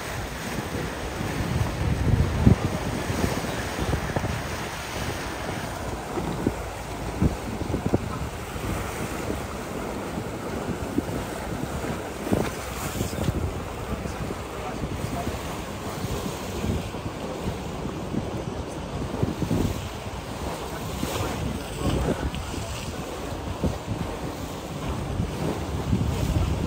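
Wind buffeting the microphone in irregular gusts over the rush and splash of water alongside a moving boat.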